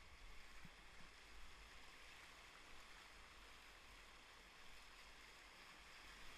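Faint, steady rush of fast river water running over rapids, with a low rumble underneath.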